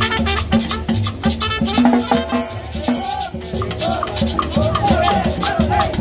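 Live Latin dance music from a street band: a metal shaker keeps a steady, fast rhythm over a repeating low beat, with a trumpet playing the melody.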